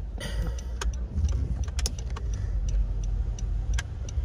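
Low, steady rumble inside a car cabin, with a few faint clicks.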